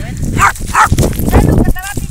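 A dog giving two short barks about half a second apart, followed by a higher-pitched yelp near the end.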